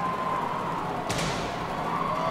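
A thud about a second in as the starting gate drops and the marbles are released onto a plastic marble-race track, dying away over about half a second.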